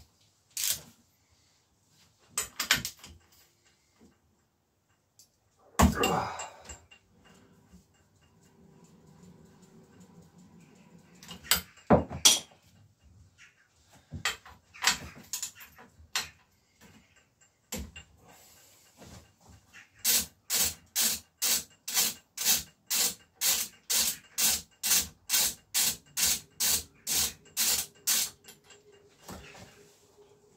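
Hand-tool work on a bicycle crankset: scattered knocks and clanks of metal tools, then a run of quick, regular strokes, about three a second, lasting some nine seconds.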